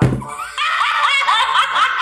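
A brief low thud at the start, then a woman laughing hard in quick repeated high peals.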